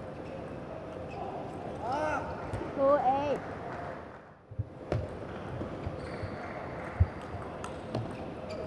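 A celluloid-plastic table tennis ball clicking off the rackets and the table. Two loud shouts with a rising and falling pitch come around two and three seconds in. About halfway through there is a brief hush, then single sharp ball clicks return as the next point is played.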